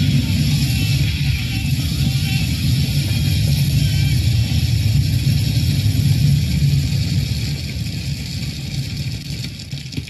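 Film sound effect of a huge pile of grain pouring down in an avalanche: a loud, steady rushing rumble that eases off over the last couple of seconds, with music underneath. It is played through a computer's speakers and picked up by the filming device.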